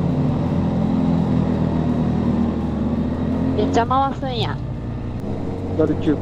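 Honda CB1300SB inline-four motorcycle engine running steadily under way, with road and wind noise; about four seconds in the engine note changes and gets a little quieter.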